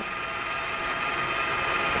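Stand mixer running steadily, its wire whisk whipping heavy cream in a stainless steel bowl: a steady whirring motor hum that grows slightly louder.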